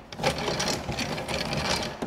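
Antique hand-cranked rope maker being turned by its crank, its gears running with a fast, even clatter.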